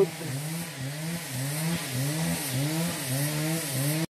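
Chainsaw engine running off to one side, its pitch rising and falling in a regular cycle about twice a second.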